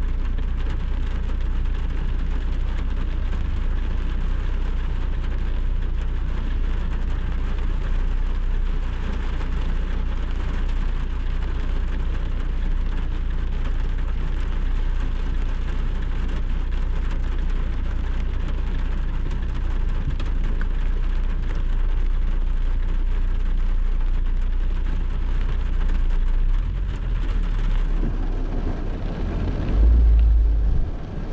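Heavy rain on a car's windscreen, heard from inside the car as a steady hiss, over the low, steady rumble of the car's engine running while the car stands still.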